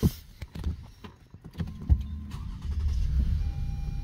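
A car's engine started from inside the cabin: a knock at the start and a louder one about two seconds in, as the engine catches and settles into a steady low idle. A thin steady electronic tone comes on near the end.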